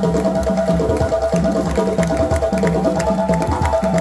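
West African drum ensemble of djembes and stick-played barrel bass drums playing a fast, driving rhythm, with sharp hand slaps over repeating low strokes.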